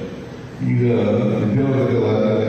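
A man's voice over a hall PA system: after a brief pause, he speaks from about half a second in, drawing out long, held syllables.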